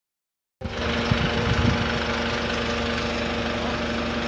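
The engine of a truck-mounted furniture lift running steadily with a constant mechanical hum, starting about half a second in, with a few light knocks in the first second and a half.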